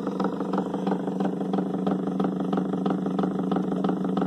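Home-built magnet rig running: a Zhiguli car flywheel set on a washing-machine wheel spinning fast, driven by a small motor, giving a steady hum with a fast, even rattle.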